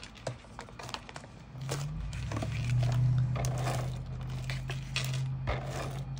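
A big truck going by, heard through an open window: a low, steady engine rumble that builds about a second and a half in, is loudest around the middle and is still going at the end. Light taps and rustles of cardstock being handled come before it.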